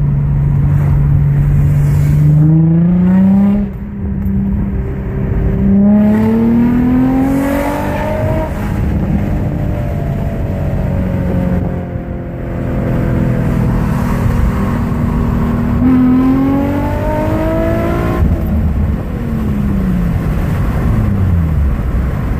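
2004 Infiniti G35 Coupe's 3.5-litre V6, fitted with an aftermarket throttle body and exhaust, heard from inside the cabin under hard acceleration. The revs climb, drop sharply at a gear change about three and a half seconds in, and climb again. They settle to a steadier pitch, rise once more about sixteen seconds in, and fall away near the end as the car slows.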